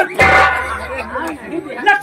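Speech only: a man's voice in stage dialogue through microphones, with a laugh near the end.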